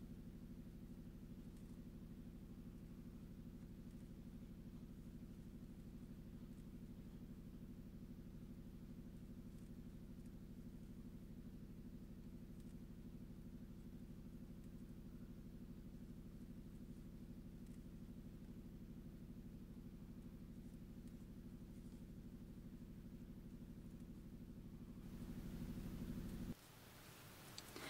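Near silence: a faint, steady low hum of background noise with no distinct events.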